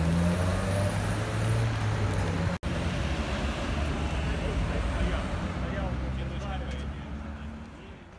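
Road traffic: vehicle engines running and a car driving past, with indistinct voices in the background. The sound cuts out for an instant about two and a half seconds in and fades down near the end.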